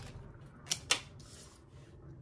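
Tarot cards being handled: two sharp card snaps a fifth of a second apart, then a soft sliding rustle.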